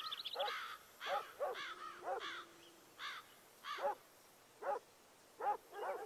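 Birds calling: a string of short, arching calls, closer together in the first half and thinning out toward the end.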